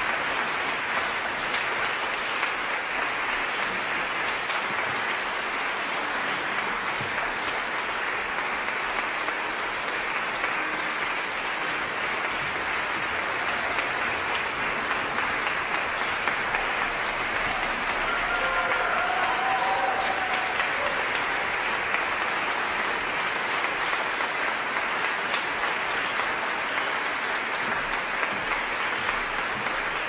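Audience applauding steadily, swelling slightly about two-thirds of the way through.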